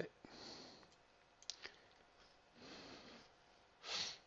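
Quiet room tone with a few faint computer mouse clicks and soft breathing close to the microphone, ending with a short, louder breath or sniff.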